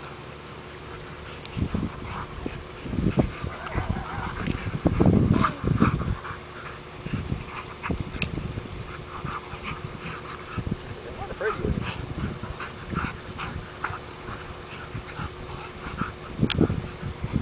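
Two Rhodesian Ridgebacks play-wrestling: growls, yips and scuffling come in irregular short bursts, loudest about five seconds in.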